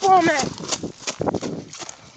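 A drawn-out shout at the very start, then quick footsteps of a person running, about three or four steps a second, with the rustle and knocking of a handheld phone being jostled as it is carried.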